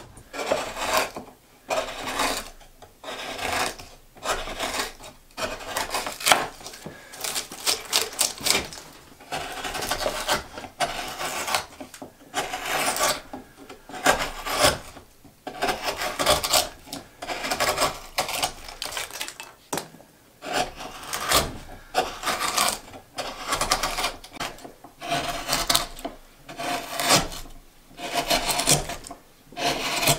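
Close-up sound of a hand gouge cutting into the wooden boat hull, hollowing it out: a run of irregular scraping, slicing strokes, about one a second, as curls of wood are scooped out.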